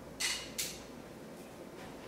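Two brief scraping clicks about half a second apart near the start: the screw cap of a glass olive-oil bottle being twisted against a stiff seal.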